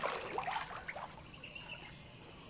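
Pool water splashing and lapping as a swimmer moves at the pool's edge, with a cluster of small splashes in the first second that settles into gentle lapping.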